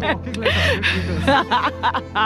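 A woman laughing and vocalising, with background music running underneath.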